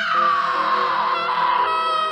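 A woman's long, high-pitched scream, its pitch sagging and then climbing again with a waver near the end, over steady background music.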